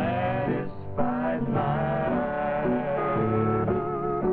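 Two men and a woman singing a country song together in three-part harmony. The sound is the narrow, thin sound of an old kinescope soundtrack.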